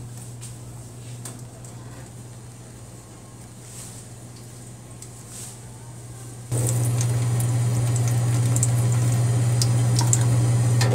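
A drinking fountain with a steady low hum; about six and a half seconds in it gets much louder as water runs from the spout and splashes into the steel basin.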